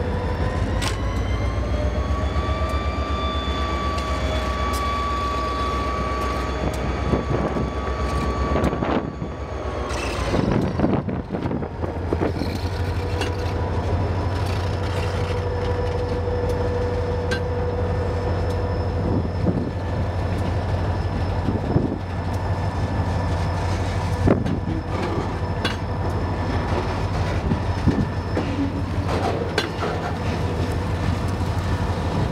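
Freight train passing close by. For the first several seconds a diesel locomotive's engine rumbles, its pitch rising and then holding steady before it fades. Freight cars then roll past with irregular wheel clicks and a drawn-out wheel squeal a little past the middle.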